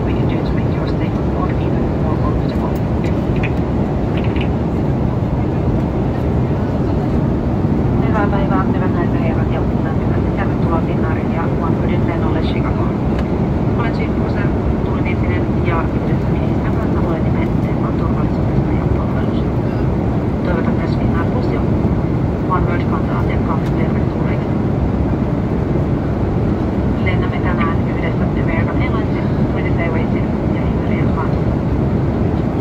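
Airliner cabin noise in flight: a steady, even rush of engine and airflow, with faint voices now and then.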